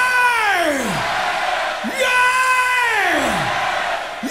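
A male rock singer's amplified long 'yeah' calls, about every two seconds: each swoops up, holds a high note and slides down. They sound over steady crowd cheering in a call-and-response.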